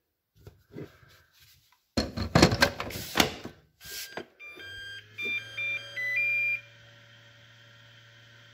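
A Makita 18V LXT lithium-ion battery is pushed into a Makita DC18RC fast charger with a few hard plastic knocks and clicks. About four and a half seconds in, the charger gives a short run of electronic beeps that step between pitches, and a steady low hum of its cooling fan starts up.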